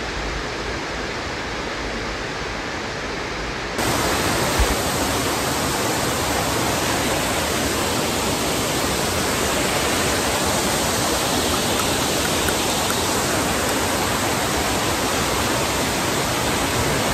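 Waterfall pouring over a rock ledge into a stony pool: a steady rush of falling water. About four seconds in the rush jumps louder and brighter, and a single soft bump follows shortly after.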